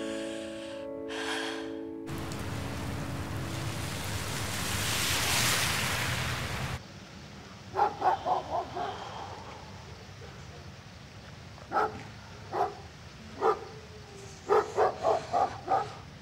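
A dog barking in short bursts: a handful of barks, then single barks a second or so apart, then a quicker run of barks near the end. Before it, the tail of soft piano music gives way to a rushing noise that swells for a few seconds and cuts off suddenly.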